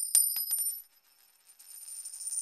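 A bright, metallic coin-like chime sound effect. A quick run of clinks rings into a steady high shimmer, fades, then swells again more softly near the end.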